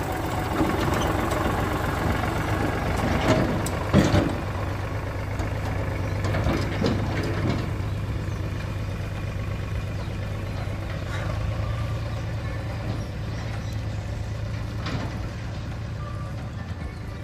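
Eicher 368 tractor's diesel engine running steadily while it pulls a trolley, with a few clattering knocks about three to four seconds in and again around six to seven seconds. The sound grows slowly fainter as the tractor moves off.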